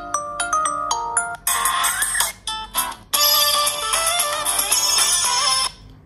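Ringtone previews playing at full volume through the Bphone B86s smartphone's built-in loudspeaker. A chiming melody plays first. About a second and a half in, a different, fuller tune takes over, and from about three seconds in another plays until it stops shortly before the end.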